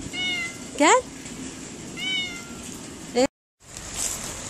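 Cats meowing: four short meows about a second apart, the second one loud and sharply rising in pitch.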